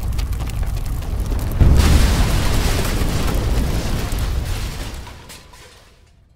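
A fuel tanker truck explodes about one and a half seconds in: a sudden deep boom that rumbles on and dies away over the next few seconds, fading out near the end. Before it, running footsteps over steady fire noise.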